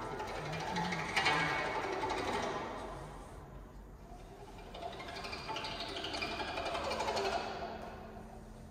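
Guzheng (Chinese zither) played solo, its plucked strings rising in two louder passages, about a second in and again around seven seconds, and fading near the end.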